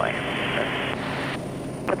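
Steady cabin drone of a Quest Kodiak 100's Pratt & Whitney PT6A-34 turboprop and propeller in descent, heard as a low even hum. Over it a radio hiss runs and cuts off suddenly about one and a half seconds in.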